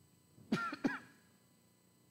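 A man clearing his throat twice in quick succession, two short, loud bursts about a third of a second apart, starting about half a second in.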